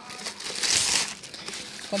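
Thin plastic carrier bag crinkling and rustling as it is handled, loudest about half a second to a second in.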